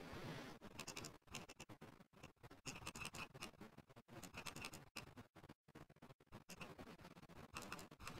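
Near silence: faint room tone with scattered faint clicks.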